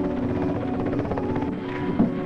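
Helicopter rotor chopping steadily in rapid, even pulses, under background music with held notes.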